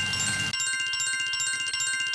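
Electronic bell-like sound effect from an online casino game: a rapid, even trill of high chimes over held ringing tones, playing as the lightning multipliers count up on the board's numbers.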